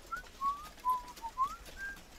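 Soft human whistling: a short, gently wandering tune of about six pure, sliding notes.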